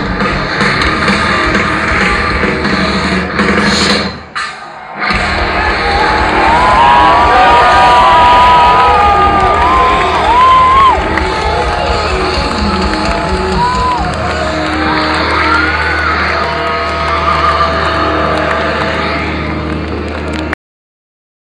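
Loud live heavy-metal music from a stadium stage, heard through a phone microphone in the crowd, breaks off about four seconds in. A large festival crowd then cheers and yells over a steady low drone from the stage.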